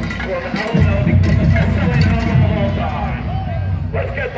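Several voices talking at once over music, with a heavy low rumble underneath that fades near the end.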